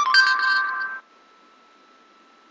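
Google Search app's voice-search chime from an iPod touch speaker: a short electronic tone, starting sharply and lasting about a second, marking that the app has stopped listening and caught the spoken query.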